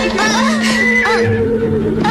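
A horse whinnying, a quick run of rising and falling calls in the first second, over background music with a steady held note.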